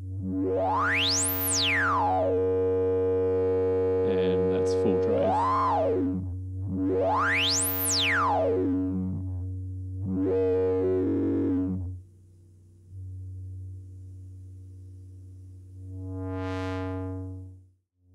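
SVF-1 state-variable filter on a synthesizer at full resonance with a little drive, which makes it slightly gritty. Its cutoff is swept by hand over a steady low note, so a whistling resonant peak glides up to a piercing top and back down twice. It then runs quieter, with one shorter sweep up and down near the end.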